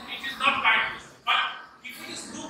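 A man's voice speaking: classroom lecture speech.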